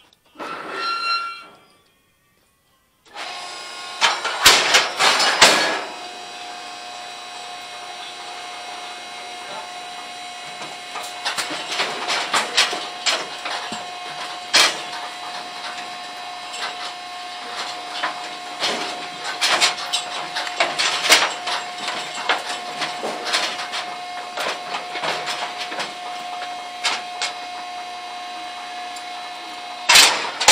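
Irregular knocks, clicks and rattles over a steady high hum, with the loudest clusters of knocks a few seconds in and again around the middle.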